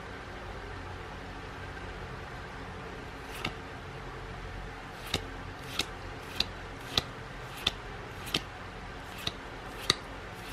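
Magic: The Gathering cards flicked through one at a time from a booster-pack stack. Each card gives a short, crisp snap as it slides off the stack, roughly every two-thirds of a second, starting about three and a half seconds in.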